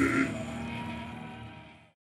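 Amplified sound of a live metal band at the end of a song: a held, ringing chord that cuts off about a quarter second in, leaving a faint ring that fades away to silence.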